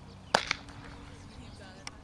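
Softball smacking into a fielder's leather glove on a catcher's throw down to second base: one sharp pop about a third of a second in, followed a moment later by a smaller knock.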